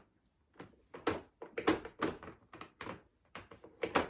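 Plastic toy cubes knocked and tapped against a baby's high-chair tray: a series of irregular knocks.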